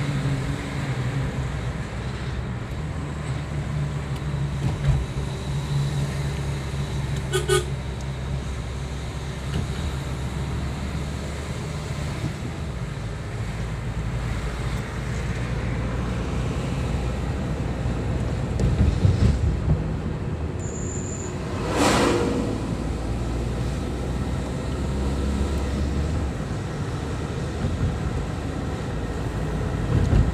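A car's engine and road noise heard from inside the cabin, a steady low drone, with a short horn toot about 7 seconds in and a louder, brief horn blast about 22 seconds in.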